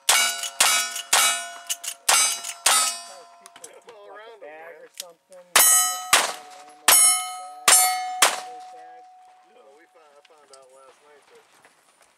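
A rifle fired about five times in quick succession at steel targets, each shot followed by the ring of struck steel. After a pause of about two seconds, a single-action revolver is fired five times and the steel plates ring, the last ring dying away over about two seconds.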